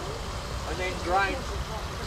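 A man's voice speaking faintly, over a low steady rumble.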